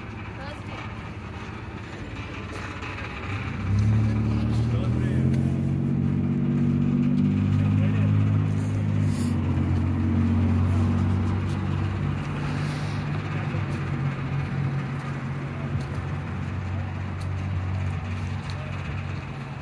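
An engine running with a low, steady hum that comes in suddenly about four seconds in and holds to the end, easing off a little in the last few seconds.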